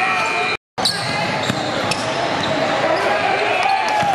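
Live game sound in a gym: a basketball bouncing on the court and players' voices echoing in the hall, with a brief moment of total silence about half a second in.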